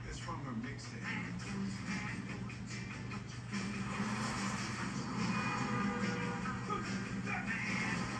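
A film soundtrack played back from a screen and picked up by a phone: music and voices over a steady low hum, the music swelling and growing louder from about four seconds in.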